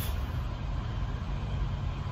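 Diesel truck engine idling, a steady low rumble heard from inside the truck's cab.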